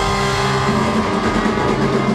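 Live brass band (saxophone, trombones and trumpets over a drum kit) playing loud sustained chords, with a new low note coming in about two-thirds of a second in.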